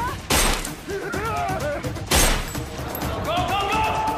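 Two loud gunshots in a film action scene, about two seconds apart, over background music. Short shouted voices come between them.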